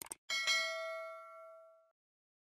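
Two quick clicks, then a single bell-like ding that rings and fades away over about a second and a half: the notification-bell sound effect of a subscribe-button animation.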